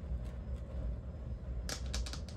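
Paper banknotes and clear plastic cash-envelope pockets being handled: faint rustling and light ticks, with a sharper click or two near the end.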